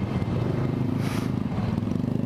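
Sport motorcycle engine running steadily at low speed while filtering through slow traffic, with a brief hiss about a second in.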